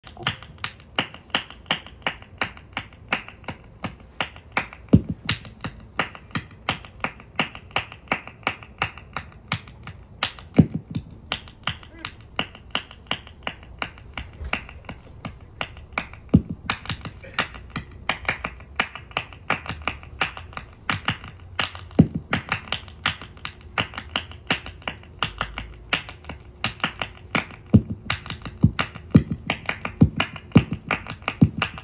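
Rhythmic finger snapping close to a microphone, about three snaps a second, with a deeper thump recurring about every five and a half seconds.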